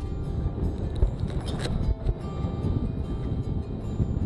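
Wind buffeting the microphone of a paraglider pilot's camera in flight, a steady low rumble, with music playing along with it.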